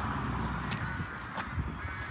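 Outdoor ambience on a handheld phone microphone: a steady low rumble with a sharp click less than a second in and a fainter one later.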